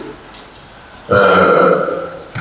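A man's drawn-out hesitation sound, a held 'ăăă' at one steady pitch, starting about a second in after a short silence and lasting just under a second.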